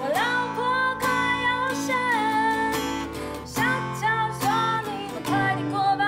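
A woman singing a song in Mandarin while strumming an acoustic guitar, her melody gliding between sustained notes over the chords.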